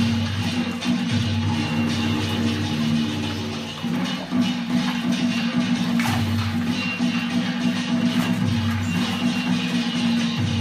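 Music accompanying a Vietnamese water puppet show, with held low notes and recurring bass notes. A brief splash of a puppet in the water comes about six seconds in.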